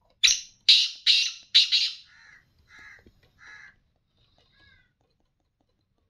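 Black francolin calling: four loud, harsh notes in quick succession in the first two seconds, followed by a few softer, lower notes that trail off.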